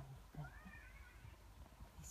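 A puppy giving one faint, high whine about half a second in, rising and then falling in pitch.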